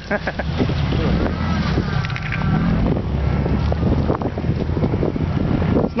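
Off-road SUV's engine running under load as it claws up a loose dirt ledge, a steady low rumble with wind noise on the microphone.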